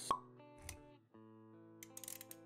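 Intro sound effects over soft music: a sharp pop just after the start, a low thump about two-thirds of a second in, then steady held synth-like notes with a few quick clicks near the end.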